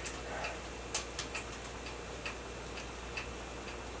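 Quiet room with faint, irregular small ticks and clicks, a few of them close together about a second in.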